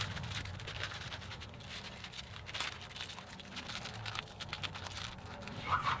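Faint rustling, scratching and small scattered ticks as an aluminium-foil pack of wetted guitar binding is slid and aligned on thin spring-steel slats and a steel slat is lifted.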